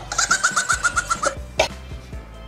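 An edited-in comic sound effect over background music: a quick run of about ten short, high chirping notes at one pitch, followed by a single click.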